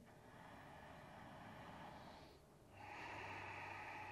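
Faint, slow breathing through the nose: two long breaths, with a short pause about two and a half seconds in between them.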